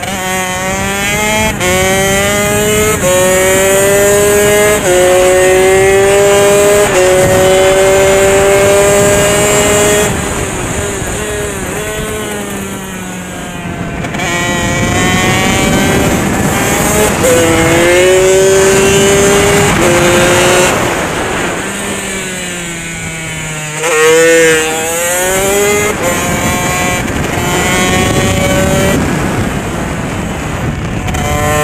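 Motorcycle engine at racing speed, heard from on board with wind rushing past. It accelerates up through the gears in the first ten seconds, its pitch climbing and dropping back at each of four upshifts. It eases off and falls in pitch for corners about ten and twenty-one seconds in, then comes back on the throttle sharply near the end.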